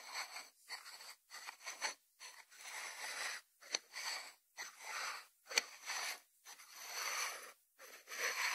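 White ceramic salt dish being turned and slid by hand on a wooden cutting board: a run of short rubbing, scraping strokes with brief gaps, and two sharp clicks in the middle.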